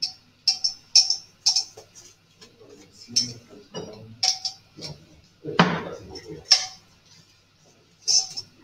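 Wine glasses clinking and knocking on a bar counter as they are handled: a run of light, ringing glass clicks at irregular intervals, several close together at times.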